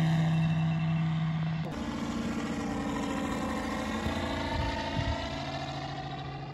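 Moki 215 five-cylinder radial engine of a large radio-controlled F4U Corsair model in flight, a steady droning note that grows fainter as the plane flies away, with an abrupt change in the sound about two seconds in.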